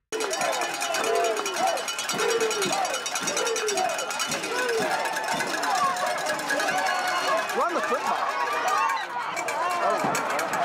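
Football game crowd: many voices shouting and yelling over one another, with someone calling "yeah" and laughing near the end.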